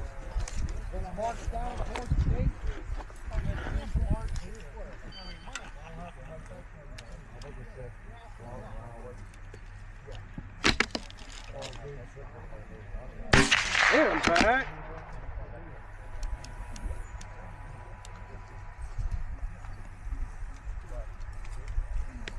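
A bolt-action precision rifle fires a single shot about 13 seconds in, a sharp crack followed by about a second of echo. A quieter pair of sharp knocks comes a few seconds before it, and faint voices are heard early on.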